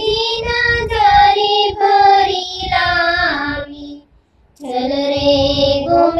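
Gujarati devotional thal song to Krishna, sung by a high voice over instrumental accompaniment with a steady beat. The music breaks off briefly about four seconds in, then resumes.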